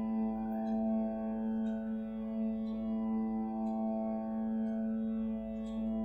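Harmonium and a humming voice holding one long, steady Sa note on a single breath, with faint light ticks about once a second.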